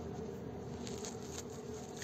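Faint steady hum with low background hiss and a few faint ticks.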